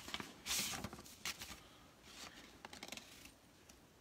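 Paper rustling faintly in several short bursts as a card is opened and handled, dying away after about three seconds.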